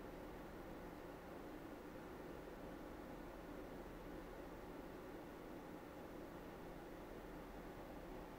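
Gaming PC under load, its Gigabyte Aorus Master RTX 3080's three cooling fans running at 84% speed at stock along with the system's other fans. The result is a faint, steady whoosh with a low hum, not all that loud.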